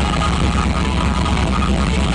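Live rock band playing loud, led by electric guitar over a heavy low rumble, heard from the audience.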